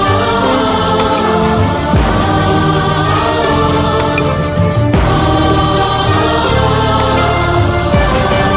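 Hindi film song: long, held wordless 'aaa' vocal lines sung over orchestral backing.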